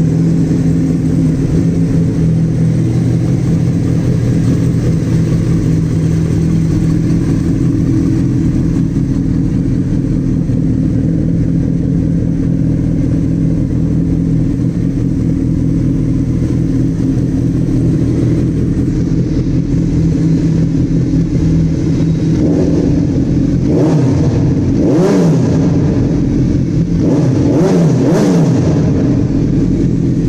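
A 2008 Suzuki B-King's 1,340 cc inline-four engine idles steadily through an SC Project aftermarket exhaust, loud. In the last eight seconds it is revved several times in short blips, the pitch rising and falling back each time.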